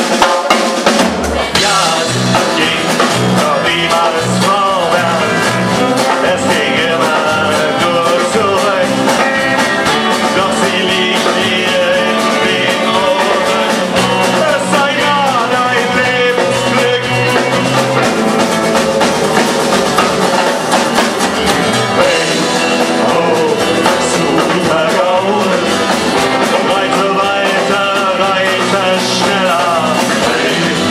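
Live indie rock band playing a song at full volume: electric guitars over a drum kit keeping a steady beat.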